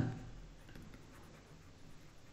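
Faint scratching and light tapping of a stylus on a tablet surface as a word is handwritten in digital ink.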